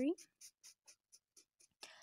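Pink felt-tip marker scribbling on paper: a run of short, faint strokes, about four a second.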